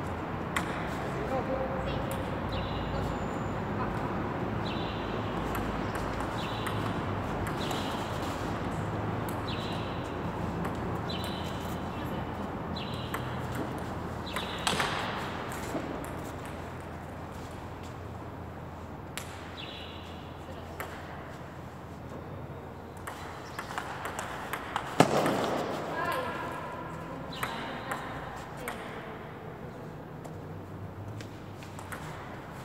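Table tennis rally: a celluloid-type ball clicking off bats and table in a quick back-and-forth, about one hit a second, in runs broken by pauses. There is a louder knock about 15 s in and a sharper, louder one about 25 s in, over a steady murmur of hall noise and voices.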